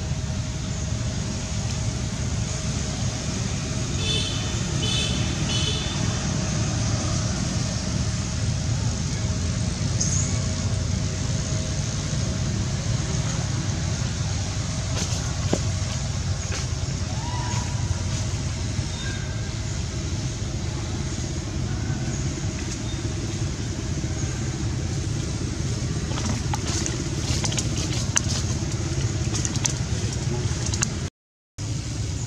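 Steady outdoor background rumble like road traffic, with a faint steady hum and a few short high chirps about four seconds in.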